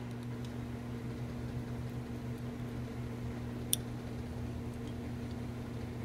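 Steady low electrical hum, with one short click a little past halfway from the small relay on the capacitor tester's circuit board as it switches the test between the two capacitor posts.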